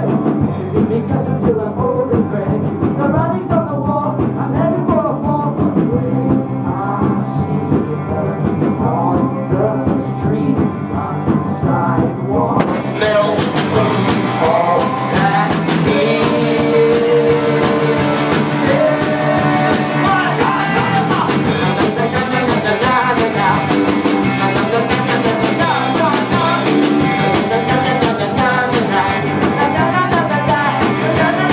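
Live rock band playing an instrumental stretch of the song on electric guitars, bass guitar and drums, heard from the audience. About thirteen seconds in, the sound turns suddenly brighter and fuller.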